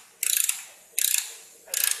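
Hand ratchet wrench tightening a valve-plate mounting bolt on a tractor frame: three strokes of rapid clicking, about two-thirds of a second apart.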